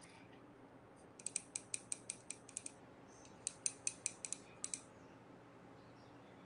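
A watercolour brush clicking against the paint pans and metal palette tin while paint is mixed: two short runs of quick, light ticks, about five or six a second.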